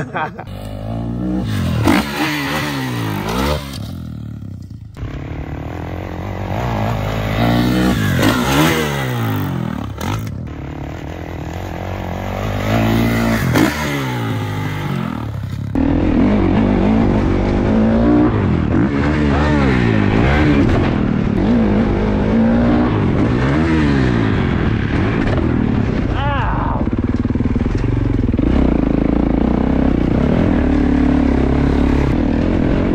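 Dirt bike engines revving, the pitch climbing and falling again several times. About halfway through, one dirt bike engine is heard close up from the rider's helmet, running hard and steadily with small rises and falls in pitch as it climbs a dirt trail.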